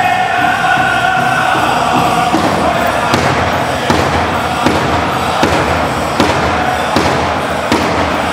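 Pow wow drum group singing an honor song over a big drum. A couple of seconds in, the singing falls back and the drum strokes stand out, evenly spaced at about one every three-quarters of a second.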